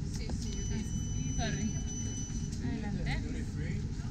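A single steady electronic beep lasting about two seconds, from a boarding-pass reader at an airport gate, heard over background voices and a low rumble.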